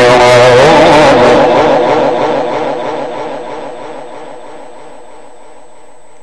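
Male Quran reciter holding one long melodic note in Egyptian tajweed style over a PA system, the pitch wavering evenly, dying away gradually over the last few seconds.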